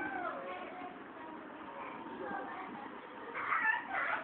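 High-pitched, wavering cries whose pitch slides up and down, with the loudest cry near the end.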